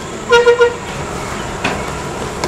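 A brief horn-like tone, sounding in about three quick pulses shortly after the start, is the loudest thing here. A fainter click follows later.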